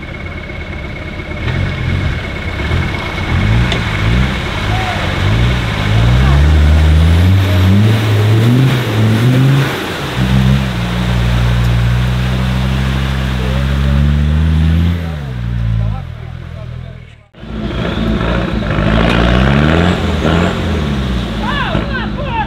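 Short-wheelbase Land Rover Defender's engine revving up and down as it drives through deep mud, held at high revs for several seconds and then easing off. After a sudden cut, a second 4x4 pickup's engine revs up and down as it wades through muddy water.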